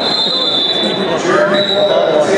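Referee's whistle blown twice, a long blast of about a second and then a shorter one, stopping the wrestling so the wrestlers can get up and reset. Crowd voices carry on underneath.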